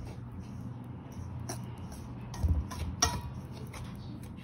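Wire whisk stirring dry flour in a stainless steel mixing bowl, with a few soft scrapes and taps of the whisk against the metal. A steady low hum runs underneath.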